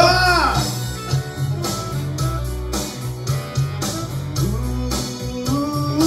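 Karaoke backing track of a country-rock song playing its instrumental ending: electric guitar over a steady bass and drum beat. A man's voice holds the last sung word for about the first half-second.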